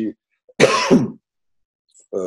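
A man clearing his throat once, about half a second in, the sound lasting just over half a second.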